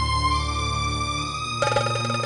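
Dramatic background score of sustained synthesizer notes. About a second and a half in, a brighter, rapidly pulsing layer comes in.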